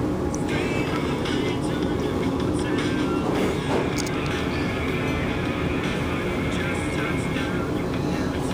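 Steady background din of a fast-food restaurant: voices and music over a constant hum of noise.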